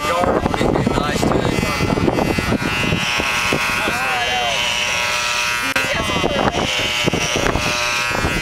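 Corded electric hair clippers running with a steady buzz during a buzz cut, with voices and laughter over it.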